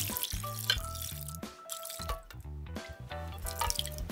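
Liquid marinade poured in a stream from a bowl into a stainless steel pot of short ribs, splashing, over background music with a steady bass line.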